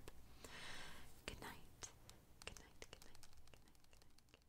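Fingertips and nails tapping lightly on a tablet's glass touchscreen: a quick, irregular series of soft clicks, after a faint breathy whisper about half a second in.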